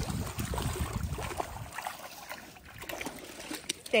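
Shallow puddle water splashing and trickling lightly as booted feet and dogs wade through it, with a low rumble in the first second or so.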